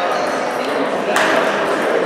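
Table tennis ball knocked back and forth with paddles and bouncing on the table, with one sharp knock about a second in. Voices and echo of a large hall behind.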